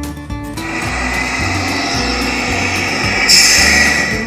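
A small motor whirring steadily, starting about half a second in and growing louder and brighter near the end, over acoustic guitar background music.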